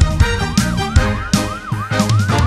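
Cartoon ambulance siren sweeping quickly up and down, about three rises and falls a second, over the upbeat backing track of a children's song with a steady drum beat.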